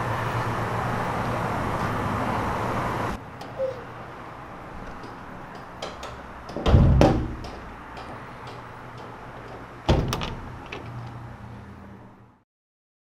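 Green steel rear door of a box truck being swung shut. A rushing noise fills the first three seconds, a loud metal bang comes about seven seconds in, and a smaller thump follows about ten seconds in.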